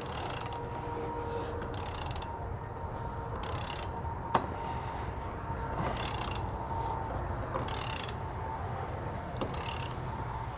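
Torque wrench ratcheting as trailer hitch bolts are torqued down: six short runs of ratchet clicks, one every one and a half to two seconds, with one sharp louder click about four and a half seconds in.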